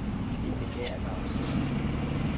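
A motor vehicle's engine running steadily close by, a continuous low hum, with faint voices in the background and a few light clicks.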